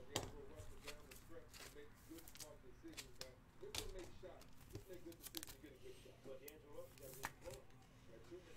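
Quiet, scattered clicks and taps of trading cards and a plastic card holder being handled, over a faint voice in the background.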